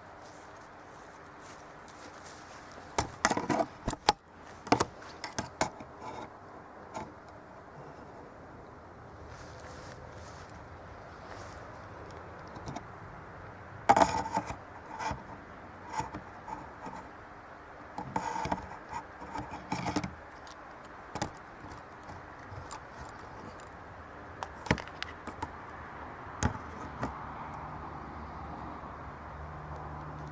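Irregular clusters of sharp clicks, rattles and scrapes, the loudest about three to five seconds in and again at about fourteen and eighteen to twenty seconds, with scattered single clicks later, over a steady hiss.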